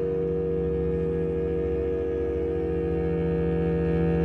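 Contemporary chamber-orchestra music: a sustained, dense low drone chord of held tones, with a rapid flutter in the bass.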